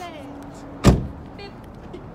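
A car door slamming shut once, about a second in: a single loud thud.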